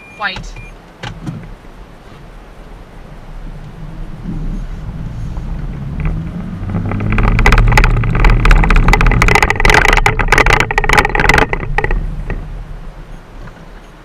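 Car driven hard, heard from inside the cabin: engine and road noise build over several seconds, are loudest for about five seconds in the middle with a rapid run of knocks and rattles, then ease off near the end.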